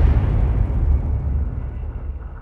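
Low rumbling tail of the final electronic boom of an uptempo hardcore track, fading steadily, its highs already gone.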